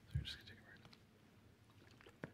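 A single dull thump at the lectern microphone a fraction of a second in, followed by faint breathy noise. The speaker is reaching for a water bottle at the lectern.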